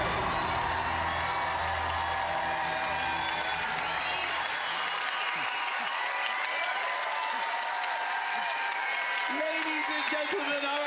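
Studio audience applauding and cheering, with whoops, over the last held chord of a song's backing music, which dies away about halfway through.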